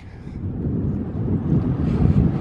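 Wind buffeting the microphone of a moving bicycle, an uneven low rumble that builds over the first second and then holds steady.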